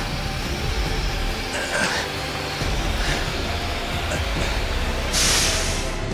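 Horror-film soundtrack: a steady low rumble under dark score music, with a loud hiss near the end.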